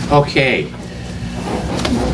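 A brief voice in a meeting room in the first half-second, then room sound over a steady low hum.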